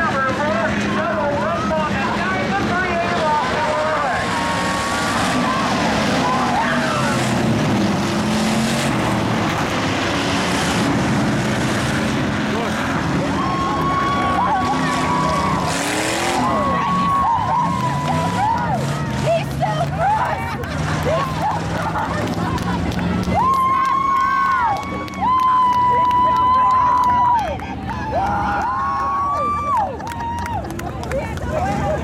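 Dirt-track hobby stock race car engines running, with repeated rev-ups in the second half that climb, hold at a steady pitch for a second or two and drop off.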